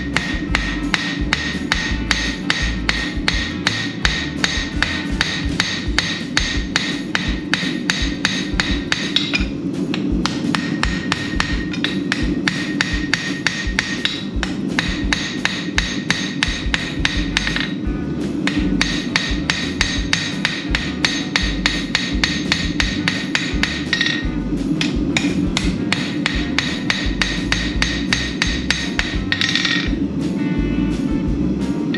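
Hand hammer striking hot steel bar on a steel anvil in a quick, steady rhythm, with the anvil ringing under the blows. This is forging out the shoulder of a pair of tongs, with three short pauses between runs of blows.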